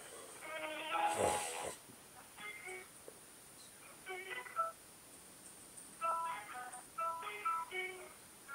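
Telephone hold music playing faintly from a phone's speaker: thin, narrow-band phrases of short notes every second or so. A brief voice sounds about a second in.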